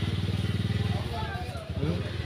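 An engine idling steadily with an even low pulse, with faint voices near the end.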